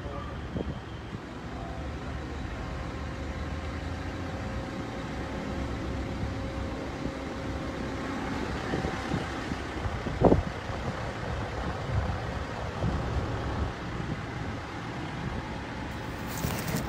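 Street ambience with a motor vehicle's engine running steadily and a low rumble of traffic, and one short knock about ten seconds in.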